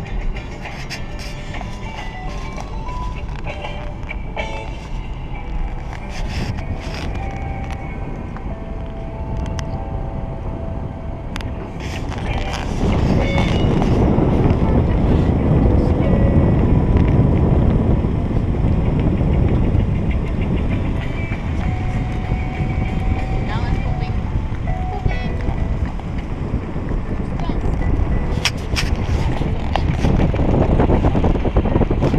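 Music playing inside a moving car over its running noise. About twelve seconds in, the sound turns to louder, steady road and wind noise from the car driving along.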